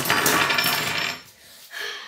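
Metal and plastic Beyblade parts clattering and clinking against each other and a wooden tabletop as they are swept together into a pile by hand; a dense clatter for about the first second, then dying away.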